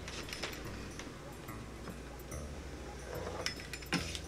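Pizza cutter wheel rolling through rolled-out pie dough on a floured board, cutting strips: faint rolling sounds with light clicks, and a sharper tap just before the end. A steady low hum runs underneath.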